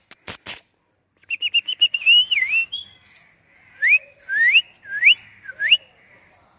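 Indian ringneck parakeet whistling: a few sharp clicks, then after a short gap a quick run of chirpy notes and four rising whistles.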